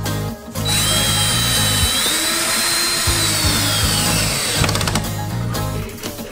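Cordless drill/driver running for about four seconds, its whine stepping up in pitch partway through and then falling as the motor winds down. Background music plays underneath.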